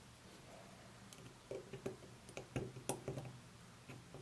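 Small clicks and scrapes of fingers handling and turning the metal barrel and rings of an old Soviet I50U-1 enlarger lens, a quick string of light ticks starting about a second in.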